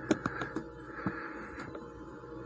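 A few light clicks and taps from handling a microscope and a phone held against its eyepiece, over a faint steady hum.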